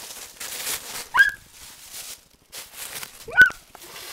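Ferret giving two short, sharp squeaks, each rising quickly in pitch, about two seconds apart, over soft rustling of plush toys and fabric.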